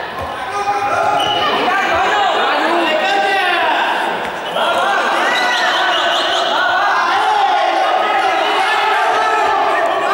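A group of young people shouting, calling and laughing over one another, echoing in a large sports hall, with a few thuds of feet on the hard floor.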